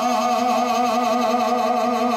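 Unaccompanied men's voices holding one long sung note with a slow, even vibrato.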